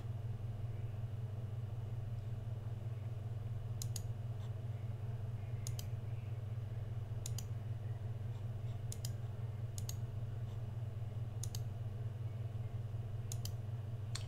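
Computer mouse button clicks, each a quick double tick of press and release, seven times spaced every second or two, over a steady low hum.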